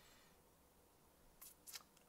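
Near silence: faint room tone, with a few short, faint clicks near the end.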